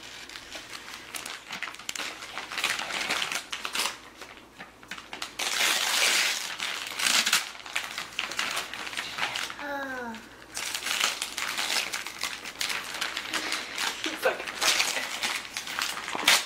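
Gift wrapping paper crinkling and tearing in irregular bursts as a toddler pulls at a wrapped present, with a short vocal sound about ten seconds in.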